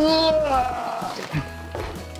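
A drawn-out voice lasting about a second, over background music.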